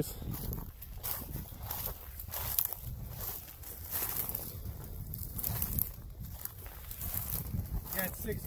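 Footsteps through dry field stubble, with wind rumbling on the microphone.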